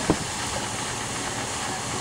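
A vehicle engine idling under a steady hiss, with one short click just after the start.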